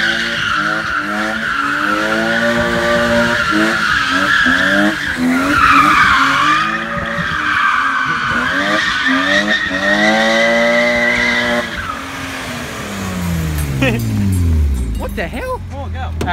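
BMW E36 sedan drifting: the engine revs up and down again and again under a wavering tyre squeal as the rear tyres slide on asphalt. Near the end the squeal stops and the engine note falls away steadily as the car passes close by.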